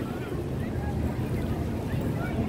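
Outdoor pedestrian-street ambience: a steady low rumble with faint voices of passers-by in the background.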